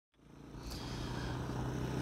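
Motorcycle engine running steadily at low revs, a low even hum that fades in from silence at the start.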